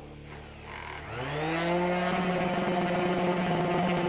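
Electric orbital polisher with a foam pad starting up about a second in, its motor rising in pitch as it spins up and then running steadily while it buffs ultra-fine swirl-remover compound into the clear coat of a drum shell.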